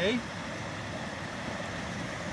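Creek water running through a beaver dam of sticks, a steady rushing hiss.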